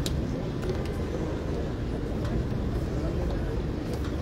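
Crowd murmur: many people talking at once, none clearly, over a steady low rumble of street noise.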